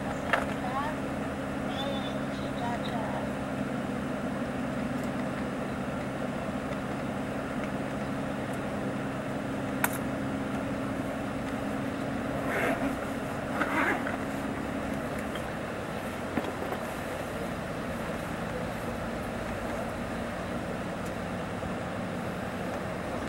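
Cabin noise of a Mercedes-Benz O-500RSDD double-decker coach cruising on the highway, heard from the upper deck: a steady low engine hum under tyre and wind noise. The hum's pitch shifts slightly after about 15 s. There is a sharp click about 10 s in and a few brief louder rattles or rustles around 13 s.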